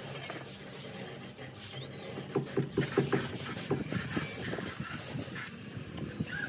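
Hand trowel scraping along the edge of wet sand-and-cement render in quick short strokes, several a second, starting about two seconds in, over a steady low hum.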